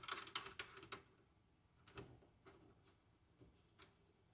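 Faint clicks and small scrapes of a plasma torch's trigger plug being pushed into its socket on the cutter's front panel and screwed down by hand: a cluster of light clicks in the first second, then a few isolated ticks.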